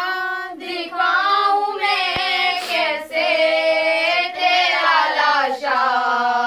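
A group of girls singing a Muharram noha (mourning lament) together without instruments, in long held, wavering lines. A single sharp thump comes about two seconds in.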